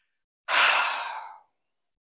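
A man's single long sigh: one breathy exhale that starts suddenly about half a second in and fades out over about a second.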